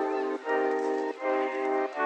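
Music: sustained pitched chords with no bass, changing about every half second.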